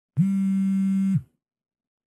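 A single electronic buzzer tone, low and harsh with many overtones, held steady for about a second and then cut off, with a brief drop in pitch as it starts and as it stops.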